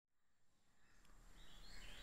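Near silence, with faint outdoor background noise fading in during the second half.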